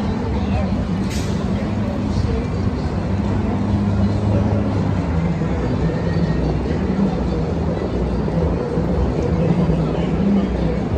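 Cars passing on a busy street, with crowd chatter and music in the mix at a steady level.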